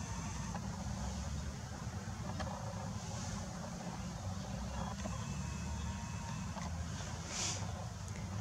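Steady low rumble, with a short soft hiss about seven seconds in.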